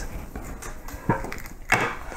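Handling and movement noise from a person reaching to one side and picking up a small object: soft rustling, a light click about a second in, and a brief louder rustle near the end.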